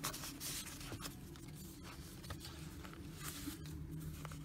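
Soft rustling and sliding of paper as journal pages and card inserts are handled, with a few faint ticks of paper edges, over a low steady room hum.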